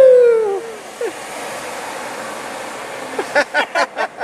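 A long, falling vocal whoop trails off in the first half-second, followed by steady traffic and road noise. Near the end comes a burst of rapid laughter, about five 'ha's a second.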